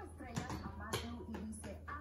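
A few faint, scattered clicks and taps, a small dog's claws on a tile floor as it runs, over faint background music.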